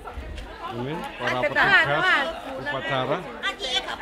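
Several people talking at once, overlapping chatter in a group with no single clear speaker.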